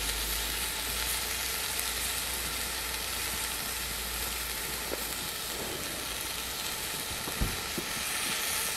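Steady sizzling hiss from a pot of soup heating on a grill over a wood and charcoal fire in an open brazier. There is a single soft knock near the end.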